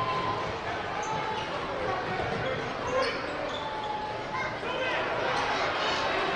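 Live basketball game sound in an arena: a ball bouncing on the hardwood court over a steady crowd murmur and scattered voices, with a few short, high squeaks.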